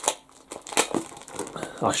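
Clear plastic bags around comic books crinkling and rustling in the hands as the comics are handled, a series of short, sharp crackles.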